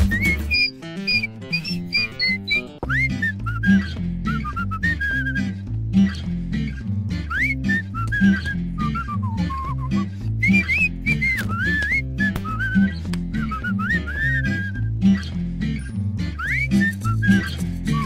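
Upbeat instrumental song: a whistled melody gliding up and down over a rhythmic bass line and guitar. The bass drops out for about two seconds near the start, then comes back in.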